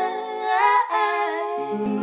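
Female voices singing the closing phrase of a soft acoustic pop cover. About one and a half seconds in, a held chord starts to ring and slowly fade.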